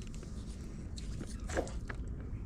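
Faint crackling and rustling of twigs and brush as the kayak rests against an overhanging bush, a few soft crackles about halfway through and near the end over a low rumble.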